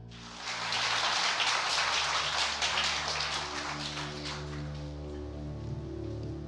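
Audience applauding: many overlapping claps that start suddenly, are loudest for the first few seconds and then die away.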